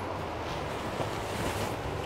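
Quiet, steady background hiss with a faint low hum: room tone.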